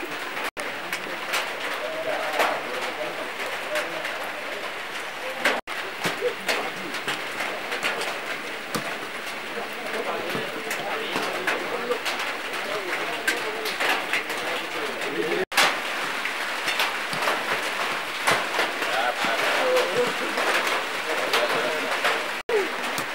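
Outdoor ambience in light rain: a steady hiss with many small ticks, indistinct voices and a bird calling. The sound drops out briefly three times where the shots change.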